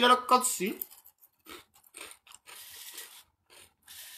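A man's voice speaking briefly in a small room, cut off within the first second. Then a quiet stretch with a few faint, soft clicks and rustles.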